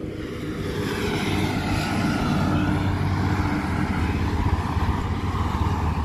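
Steady drone of a moving car: engine hum with tyre and wind noise. It grows a little louder over the first two seconds, then holds steady.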